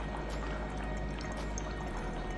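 An air pump bubbling air through water, with a steady low hum and a continuous trickling bubble noise, aerating the test water for a dissolved-oxygen reading.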